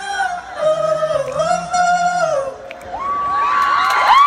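Live pop vocal over a concert sound system, holding long wavering notes to close the song. About three seconds in, the crowd cheers with rising, high-pitched screams.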